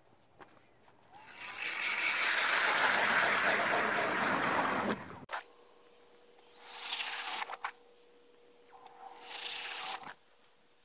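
Battery-powered ice auger drilling test holes through about 10 inches of lake ice. A long rushing burst about a second in cuts off sharply. Then comes a steady hum with two shorter bursts of drilling.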